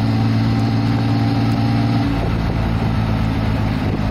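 The 1967 Austin-Healey 3000 Mark III's straight-six engine running under way with a steady note. About two seconds in the note changes and drops, and a deeper rumble comes up.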